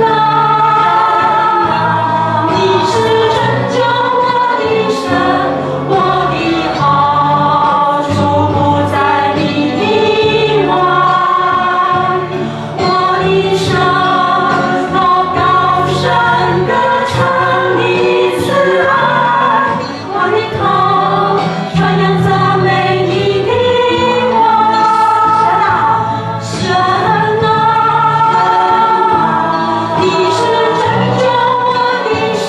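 Church worship band playing a praise song, a group of voices singing the melody together over bass and drum hits about once a second.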